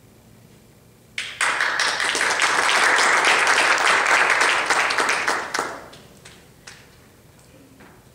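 A small audience applauding: the clapping starts suddenly about a second in, holds for about four seconds, then dies away, with a few last single claps near the end.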